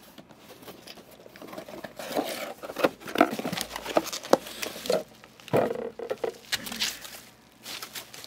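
Hands opening a cardboard box and pulling out bubble wrap: an irregular run of crinkles, rustles and small clicks, with short pauses.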